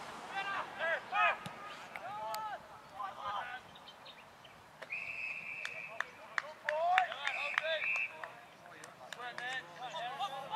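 Umpire's whistle at an Australian rules football match: a steady blast of about a second roughly halfway through, then a shorter blast a couple of seconds later. Players shout to one another in the first few seconds.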